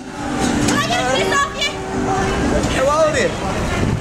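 Voices talking close to the microphone over busy city street noise with traffic, cutting in suddenly from silence.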